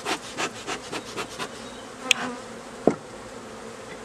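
Honeybees buzzing around an opened hive while a bee smoker's bellows puffs smoke over the frames in a quick run of short strokes during the first second and a half. A sharp click comes about two seconds in and a short knock a little later.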